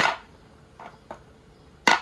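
A pestle striking chopped garlic and shallots on a wooden cutting board to crush them: one hard strike at the start and another near the end, with a couple of lighter taps in between.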